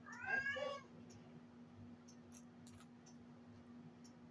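A small dog gives one short, high-pitched whine near the start, over a steady low hum.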